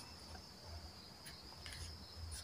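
Quiet room tone with a faint, steady high-pitched tone throughout and a few soft ticks past the middle.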